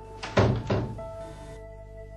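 A door thudding shut about half a second in, over soft background music with long held notes.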